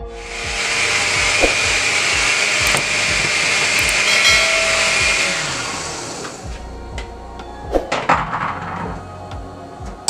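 A loud, steady hiss that fades out about six seconds in. It is followed by clinks and knocks as a metal mesh strainer and a plastic container are set up in a stainless steel sink.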